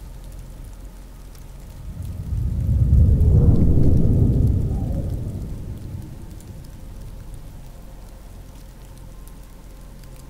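Steady rain with a long low roll of thunder that builds about two seconds in, peaks, and dies away a few seconds later.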